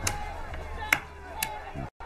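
Chinese abacus (suanpan) beads being flicked, giving a few sharp clacks at uneven intervals: one at the start, one about a second in and another shortly after.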